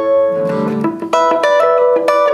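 Electric guitar, a Fender Telecaster, playing a hybrid-picked rockabilly lick: a palm-muted root note on the D string alternating with two- and three-note chords plucked by the fingers on the G and B strings. About six quick picked notes and chords in two seconds, with a muted low note about halfway through.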